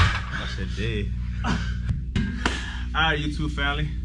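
Background music cuts off at the start, leaving a steady low room hum with a few brief, unclear voice sounds.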